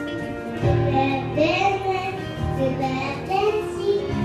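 A young girl singing into a handheld microphone over backing music with a steady bass line; her singing comes in about half a second in.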